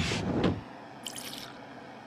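Cartoon laboratory sound effects: liquid dripping in glassware over a steady hiss, with a brief crackle about a second in. A short swish at the very start, as a door opens.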